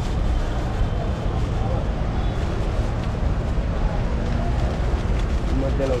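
Steady low rumble of street noise with voices talking in the background.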